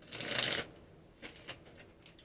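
A tarot deck being shuffled by hand: a short rustling burst of cards lasting about half a second, then a couple of faint taps.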